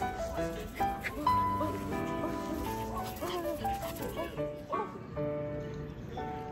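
Background music with a light, steady melody. A few short dog yips sound in the middle.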